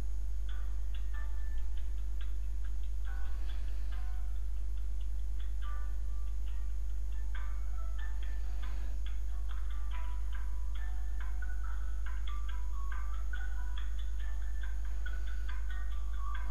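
Short electronic beeps at varying pitches come in irregular flurries throughout, over a steady low electrical hum.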